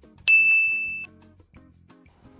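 A single bright, bell-like ding sound effect, struck about a quarter second in, ringing for under a second and then cutting off abruptly, over quiet background music.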